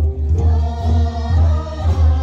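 A Tibetan gorshey circle-dance song: a group singing over a heavy, pulsing low bass.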